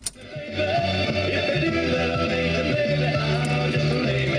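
A push button on a 1950 Ford's original 6-volt car radio clicks, and about half a second later music with guitar comes in through the radio's speaker and plays steadily.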